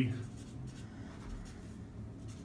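Felt-tip marker scratching on a flip-chart paper sheet on a wall, a soft, faint scrawling as a word is written.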